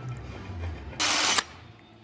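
A tool working on an aluminium door-frame profile: one short, harsh scraping burst of about half a second, about a second in.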